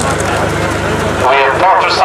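People talking, over a low steady rumble that drops away about a second and a half in.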